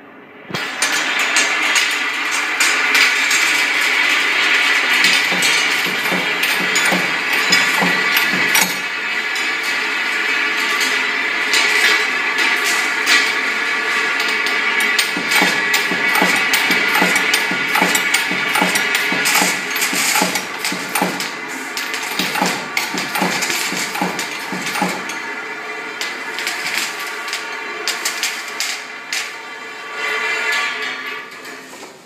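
Jar filling line machinery running: a steady whine with a rapid, uneven clatter of clicks and knocks that starts suddenly about half a second in.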